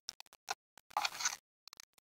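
Hard plastic toy capsule shaped like a shampoo bottle being twisted open by hand: scattered light clicks and scrapes of plastic on plastic, with a small cluster of them a little after one second.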